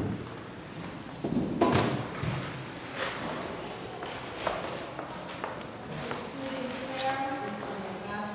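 The last piano note cuts off, followed by footsteps and scattered knocks and thuds on a tiled floor, the loudest about a second and a half in, over people talking quietly.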